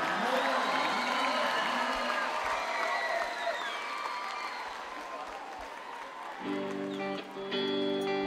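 Concert crowd applauding and cheering between songs, fading steadily. About six and a half seconds in, a guitar starts the opening of the next song with sustained notes.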